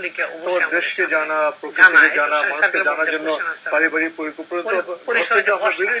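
Only speech: a man talking continuously.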